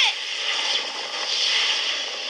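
A steady, even noise with no tone or words, from the episode's sound effects.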